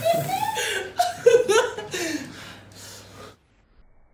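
People laughing and chuckling, mixed with excited voices. The sound cuts off abruptly a little over three seconds in.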